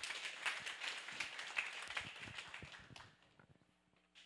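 Audience applauding: dense clapping that fades out about three seconds in.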